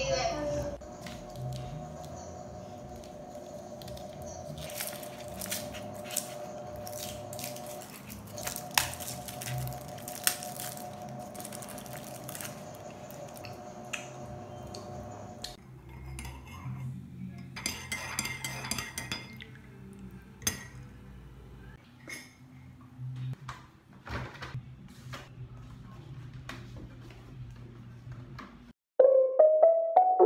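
Scattered light clicks and clinks of small hard objects, such as cutlery or a spoon against a mug, over a faint steady hum that stops about halfway through.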